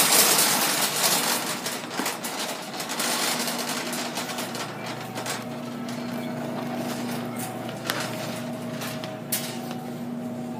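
Shopping cart rolling along a store floor, with loud rustling of the phone being handled at first and a steady hum underneath.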